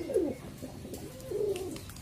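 Domestic pigeons cooing: a few low, soft coos, one falling in pitch near the start and a longer one in the second half.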